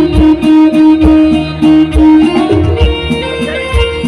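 Live band playing an instrumental passage: a plucked-string melody over sustained notes, with a low percussion beat about once a second.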